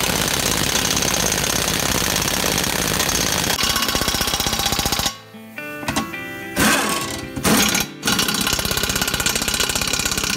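Impact wrench hammering on the wheel bolts of a tractor's front dual wheel hub. It stops about five seconds in and starts again about three seconds later. Music plays underneath and is heard on its own in the gap.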